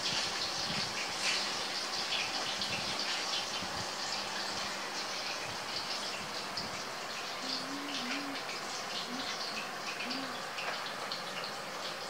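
Steady background hiss with a few faint rustles, and a faint murmuring voice in the second half.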